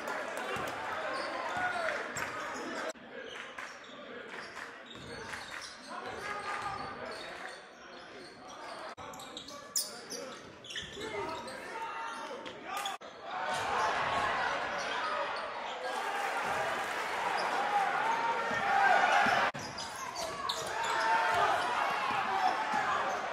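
A basketball bouncing on a gym's hardwood floor, with spectators' voices and shouts echoing around the hall; the voices grow louder and busier about two thirds of the way in.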